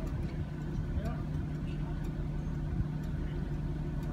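A motorboat's engine running steadily at low revs, a low even hum, under people's voices in the background.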